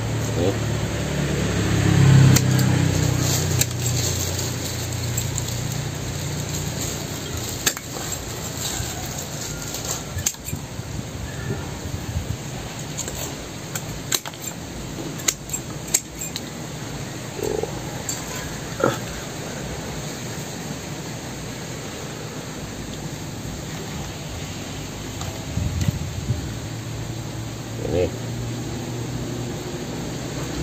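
Scattered sharp clicks and snaps of twigs and roots being cut and broken off a dug-up tree stump being trimmed as bonsai material, over a steady hiss.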